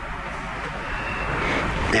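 Steady background noise in a pause between spoken phrases: an even hiss with a low hum underneath, fairly loud for a room, getting slightly louder toward the end.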